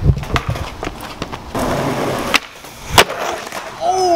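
Skateboard on concrete: a few knocks as it is set rolling, its wheels rolling briefly about a second and a half in, then a sudden click. About half a second later comes one loud crack, the loudest sound, as board and skater hit the pavement in a failed stair attempt.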